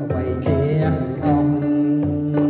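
A man singing into a handheld microphone over instrumental accompaniment, with long held notes and a steady bass underneath.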